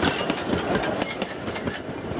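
Wooden passenger carriages of a heritage steam train rolling past, their wheels clicking over rail joints in quick irregular beats. The sound dies away as the end of the train passes.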